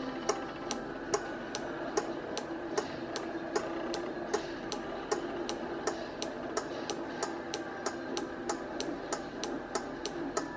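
12 V DC relay clicking steadily about three times a second as a square-wave oscillator switches it on and off, each click its contacts pulling in or dropping out.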